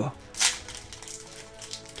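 Foil wrapper of a Yu-Gi-Oh booster pack being torn open by hand: one short crinkling rip about half a second in, over faint background music.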